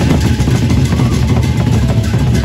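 Gendang beleq ensemble playing: large Sasak double-headed barrel drums beaten with sticks in a dense, continuous rhythm with no clear gaps between strokes.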